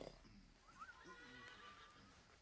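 Near silence, with faint, brief sounds from the soundtrack of a commercial playing quietly.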